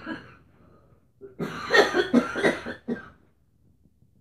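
A person coughing: a short throat sound at the start, then a fit of several coughs about a second and a half in.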